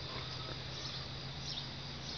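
Quiet outdoor background: a steady low hum under a faint even hiss, with a few faint short high chirps.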